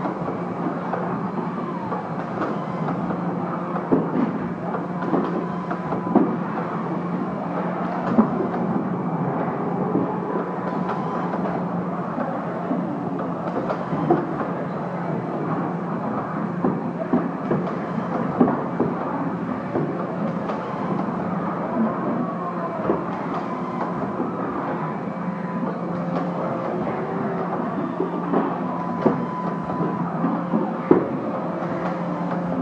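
Power-tool assembly-line machinery running: a steady hum under a dense clatter of irregular clicks and knocks, with a thin high tone coming and going a few times.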